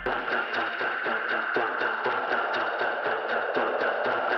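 Outro of an electronic dance track: the kick drum and bass drop out, leaving layered synths over a steady pulsing rhythm in the upper range.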